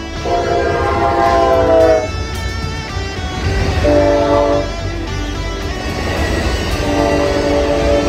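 A train horn sounding three blasts: a long one that sags slightly in pitch at its end, a short one about four seconds in, and another long one starting near the end, over the low rumble of the passing train.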